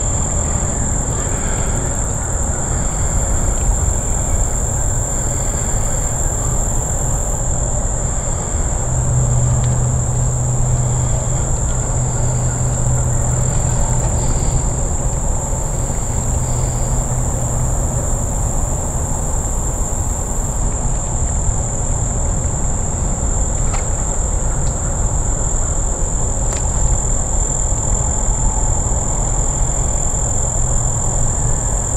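A steady, high-pitched insect drone over a constant low rumble, with a few faint clicks near the end.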